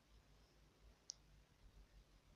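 Near silence, broken by a single short, high click about halfway through.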